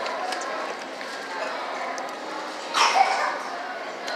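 Background chatter of voices in a restaurant dining room, with a brief loud sound about three seconds in.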